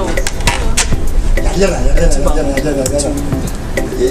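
Voices under a steady run of sharp metallic clicks or taps, about two to three a second.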